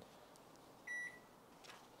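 Iris Ohyama microwave oven's control panel giving one short, high key-press beep about a second in, as a button is pressed.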